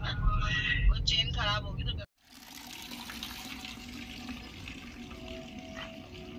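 Low rumble of a car driving, heard from inside the cabin. About two seconds in it cuts off abruptly, and a steady, quieter hiss follows.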